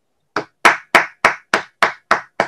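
One person clapping hands in applause at the close of a talk, six even claps at about three a second, starting a third of a second in, heard through a videoconference microphone.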